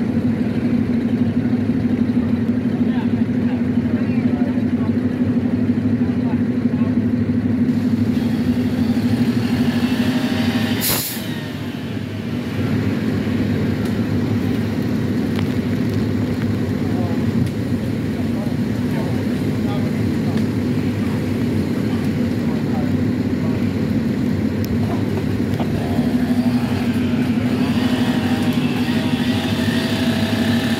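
Heavy truck engine idling steadily, with voices in the background. About eleven seconds in there is a brief sharp hiss.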